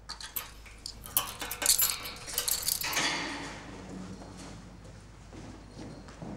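Metal clinking and rattling: a quick run of sharp clinks over the first three seconds, then quieter.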